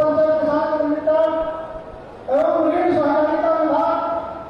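A voice chanting in long, held phrases, with a short pause about two seconds in before the next phrase starts.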